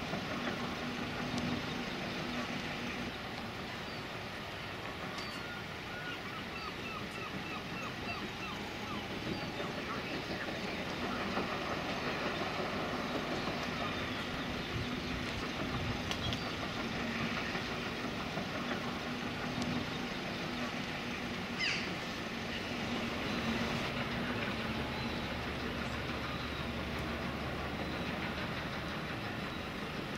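Riverside outdoor ambience: a steady low engine hum that fades in and out over a background wash of noise, with scattered faint higher chirps and a single sharp click about 22 seconds in.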